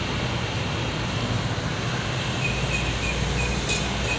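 Steady outdoor background noise with no speech, holding a low rumble that grows louder a little past halfway and drops away shortly before the end.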